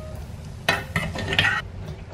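A metal fork scraping and clinking against a plate and a steel pot as rice is served onto a salad. The clatter is loudest for about a second in the middle, over a steady low hum.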